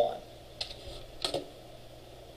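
A few separate keystrokes on a computer keyboard as a number is typed into code.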